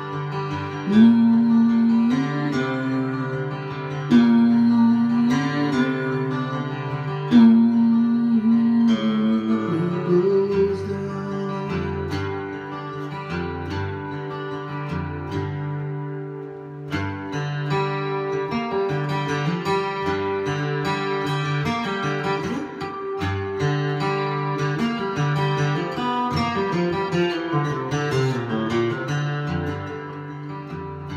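Acoustic guitar played solo in an instrumental break, strummed chords with picked lead notes. Three loud held notes, each ending in a slight upward bend, stand out in the first nine seconds.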